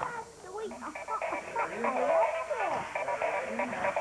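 Robotic toy frog making electronic voice sounds through its small speaker, with pitch sliding up and down in short phrases.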